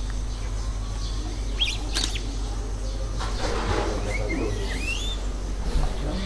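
Birds chirping: a few short high calls about two seconds in, and a warbling call that rises and falls near the end, over a steady low rumble.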